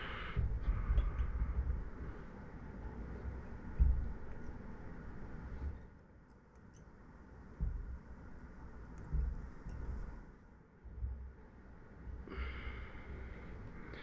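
Quiet handling sounds of fly tying: faint rustles and small clicks with irregular low bumps as thread is wound from a bobbin around the head of a fly clamped in a vise.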